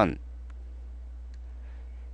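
A pause between spoken sentences: a steady low hum, with two faint clicks, one about half a second in and one near a second and a half in.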